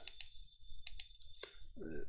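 Computer mouse clicks: a few sharp clicks, several in quick pairs, spread over two seconds as items are selected in a music notation program.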